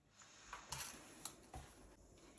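Near silence with four faint, short clicks and knocks from handling a wire whisk and silicone spatula against plastic tubs of plaster mixture.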